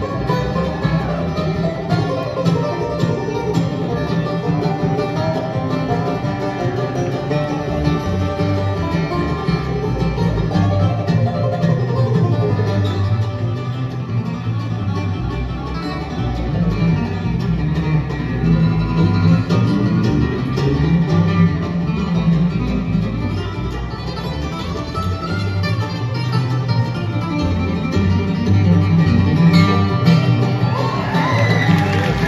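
Live acoustic bluegrass band playing an instrumental tune: banjo, mandolin, acoustic guitar and fiddle over a plucked upright bass.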